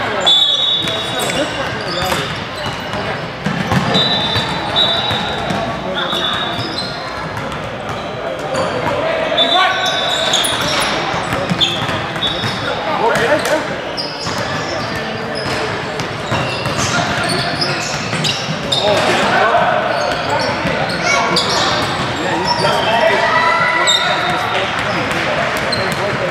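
Basketballs bouncing on a hardwood gym floor amid the indistinct chatter of many voices, echoing in a large hall. Short high squeaks, typical of sneakers on the court, come and go.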